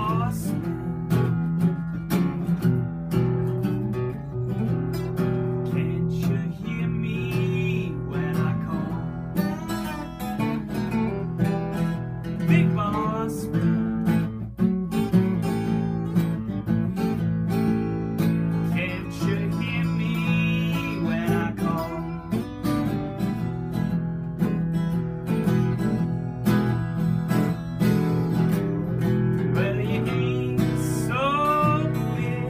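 A Martin 00 mahogany acoustic guitar and a Silvertone Sovereign acoustic guitar played together, strummed chords with some notes bending in pitch.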